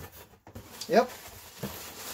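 Plastic air-pillow packing rustling and scraping against cardboard as it is pulled out of a shipping box, with a short spoken "yep" about a second in.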